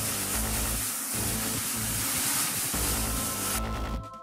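Liquid nitrogen jetting from a transfer hose into a plastic tub and boiling off: a loud, steady hiss that cuts off suddenly near the end, over background music.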